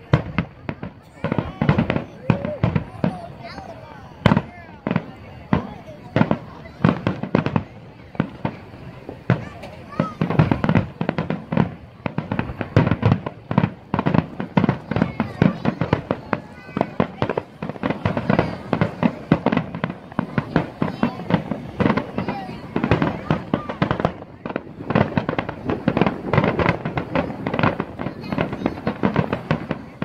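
Aerial firework shells bursting in a finale barrage: many sharp booms and crackles overlapping, several a second, with the thickest volleys in the second half.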